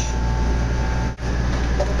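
Steady low machinery hum of a commercial kitchen's ventilation and refrigeration, with a faint thin whine over it. It drops out for an instant just over a second in.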